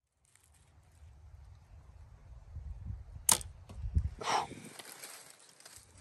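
A youth Bear Archery Royale compound bow shot with a Nock On Silverback handheld release: a sharp click about three seconds in as the release fires and the string sends the arrow off, followed about a second later by a duller sound of the arrow striking the target.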